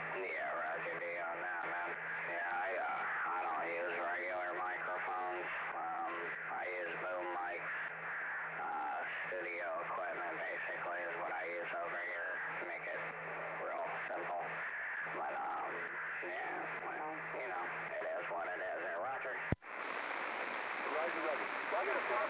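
A station's voice transmission heard through a CB receiver's speaker on lower sideband, with a steady low hum under it. The voice is not clear enough to make out words. Near the end the carrier drops with a sharp click, leaving band hiss.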